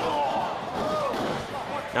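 Low background murmur of a small crowd, with faint scattered voices.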